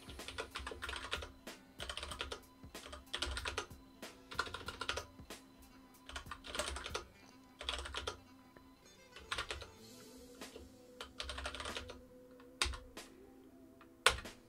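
Typing on a computer keyboard in quick bursts of key clicks with short pauses between them, as a terminal command is entered.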